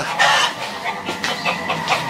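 Black-boned (ogolgye) chickens calling repeatedly from their coop, several irregular overlapping calls.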